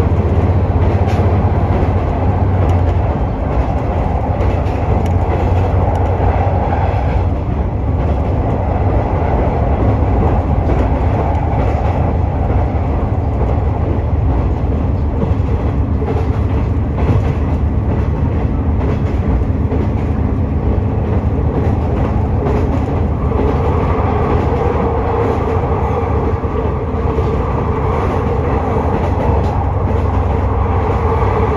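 KiHa 126 diesel railcar running at speed, heard from inside the cabin: a steady low diesel drone with rail and wheel noise. About two-thirds of the way through, a higher engine note comes in over the drone.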